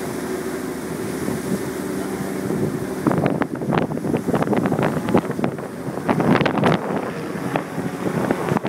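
A boat's engine running with a steady low hum, under wind and water noise. From about three seconds in, uneven crackling and buffeting from wind on the microphone covers it.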